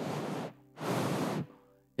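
A man breathing audibly and close into a handheld microphone: two slow breaths, each about half a second long, acting out a sleeping child's breathing.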